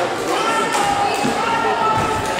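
Voices calling out across a sports hall, with a few thuds of a futsal ball on the wooden floor.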